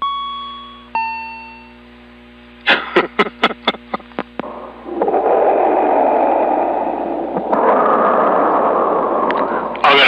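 CB radio receiver audio: two fading chime tones a second apart, the second lower, then a quick run of about eight sharp pulses. After that comes a steady rushing noise that steps up in level about halfway through, as signals are keyed up on the channel.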